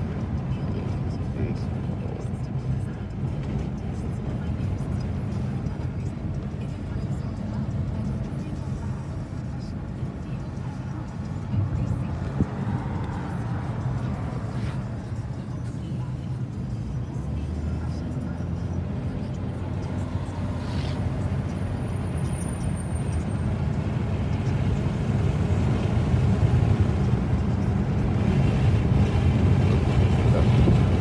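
Road and engine noise inside a moving car's cabin, a steady low rumble that grows a little louder near the end, with muffled speech and music underneath.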